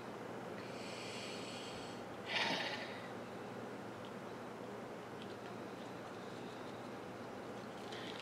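Quiet room tone, broken about two and a half seconds in by one short breath out through the nose, a sniff-like hiss.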